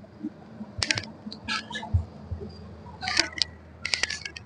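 Scattered light clicks and rattles of handling, with a low steady hum coming in about two seconds in.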